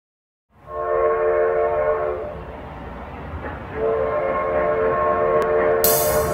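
Train whistle sound effect at the start of a recorded song: two long blasts, each a chord of steady tones, over the low rumble of a rolling train. The first blast comes about half a second in; the second starts around four seconds in. The band's music cuts in right at the end.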